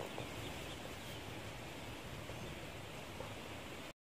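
Faint, steady outdoor background hiss with a few faint scattered chirps; it cuts out abruptly just before the end.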